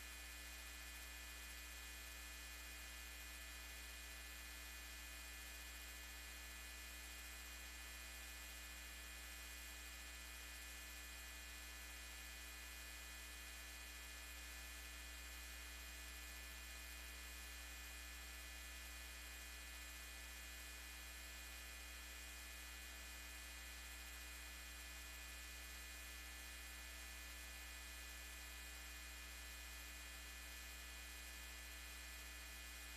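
Faint, steady electrical mains hum with a constant hiss, unchanging throughout and with no speech.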